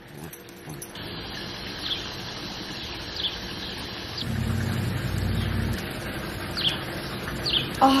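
A small bird giving short, high, downward chirps at irregular intervals over a steady outdoor hiss, with a low rumble lasting about a second and a half midway.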